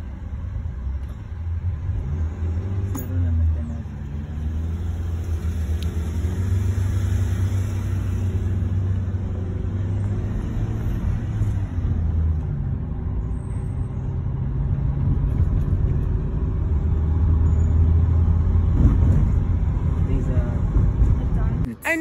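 Low rumble of engine and tyres heard from inside a moving Toyota car, growing louder toward the end before cutting off suddenly.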